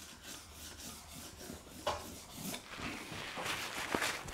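Paintbrush rubbing oil paint onto a painting in a series of short scrubbing strokes, with a sharper tap a little under two seconds in.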